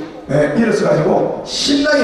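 Only speech: a man talking into a microphone through a PA system.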